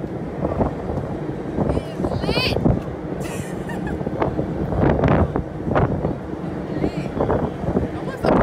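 Strong wind buffeting the phone's microphone, a rough rumble throughout, with a woman's laughter and brief voice sounds over it.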